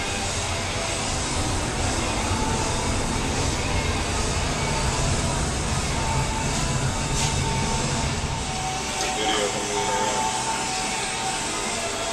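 Steady rushing noise of bubbling, circulating water in large fish holding tanks, under background music and indistinct voices.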